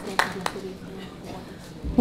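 Audience applause tailing off in the first half-second, then a quiet hall with faint voices.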